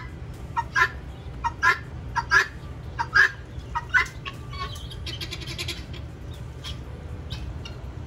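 Helmeted guineafowl calling with a repeated two-note call, about five pairs in the first four seconds, followed by a brief run of high chirps around five seconds in.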